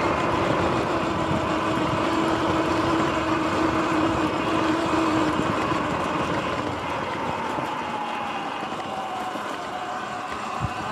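Sur Ron X electric dirt bike's motor whining at speed, over a steady rush of wind and tyre noise on a dirt trail. Over the second half the whine slowly drops in pitch and the sound gets a little quieter as the bike slows.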